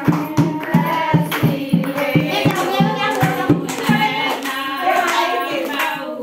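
Women singing a song to steady rhythmic hand clapping, about three claps a second; the clapping thins out near the end.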